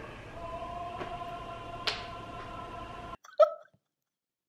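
Steady low room tone with a faint hum and one soft click, then after an abrupt drop to silence a single short, loud stifled vocal burst from a woman, like a laugh caught behind her hand.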